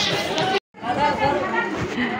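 Several voices talking at once in lively chatter, broken by a brief dropout about half a second in.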